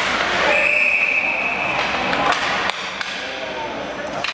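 Referee's whistle blown once in an ice arena, a steady high tone lasting a little over a second, over crowd chatter; a few sharp knocks of sticks or puck follow in the second half.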